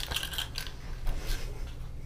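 A small object is caught by hand with a light clack, followed by soft clicking and rustling as it is handled.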